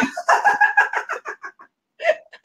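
A woman laughing heartily: a quick run of "ha" pulses that slows and fades out over about a second and a half.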